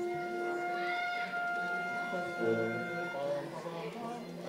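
A band wind instrument sounding long, steady single notes one after another, giving the starting pitch before the song begins, with a few voices murmuring near the end.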